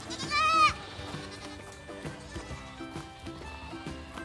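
A goat kid bleats once just after the start, a short high call that rises and falls in pitch, over soft background music.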